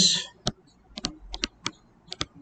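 Stylus tapping and clicking on a pen tablet while handwriting: a string of about eight sharp, irregularly spaced clicks.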